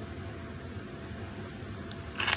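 Steady room tone, a low hum and hiss, with one faint click near the end.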